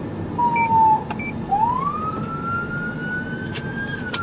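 A police patrol car's own siren in wail mode, heard from inside the car over engine and road noise. A short falling tone comes first, then about a second and a half in the wail rises in pitch, quickly at first and then slowly, until near the end.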